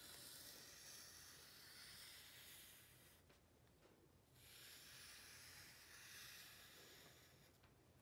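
Faint hiss of a Sharpie marker's felt tip sliding across paper in two long drawing strokes, with a pause of about a second between them about three seconds in.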